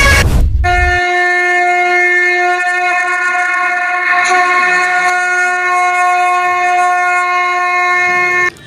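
A conch shell (shankh) blown in one long, steady note of about eight seconds, starting about half a second in after a short low boom.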